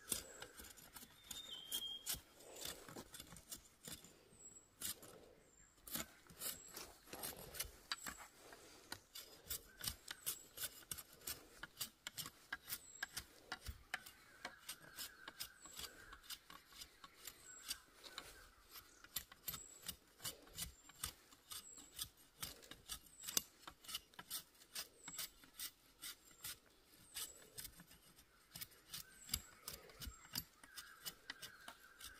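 Knife blade whittling a bamboo walking stick: a run of short, sharp scraping cuts, a few a second, going on throughout.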